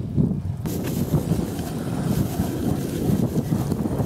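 Gusty wind buffeting the microphone in a snowstorm, a heavy uneven low rumble; a little under a second in, a steady hiss of wind joins it.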